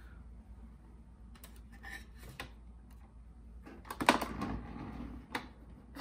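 Plastic clicks and knocks as the ink-tank caps and the hinged tank cover of an Epson EcoTank ET-3850 are pushed shut. The loudest is a clatter of knocks just past the middle, with scattered single clicks before and after.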